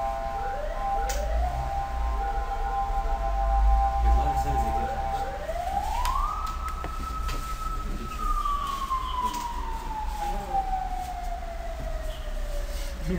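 A wailing tone that glides up about halfway through, holds for about two seconds, then slowly falls away; before it, several steady tones sound together for about five seconds, all over a low hum.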